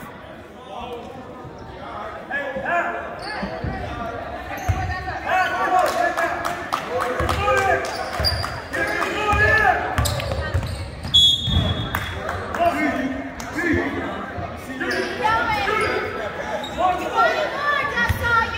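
Basketball bouncing on a hardwood gym floor during play, echoing in the gym, amid steady shouting and talk from players and spectators. A short whistle blast comes about eleven seconds in.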